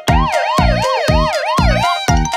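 Cartoon police-siren sound effect, a fast wail sweeping up and down about two to three times a second, over the steady drum beat of a children's song.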